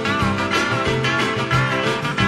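Country boogie band in an instrumental break: a guitar solos with bent notes over a steady drum beat.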